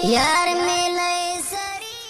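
A voice chanting a Pashto tarana: a swooping glide into a long held note, moving to a new note about one and a half seconds in, then fading out at the end.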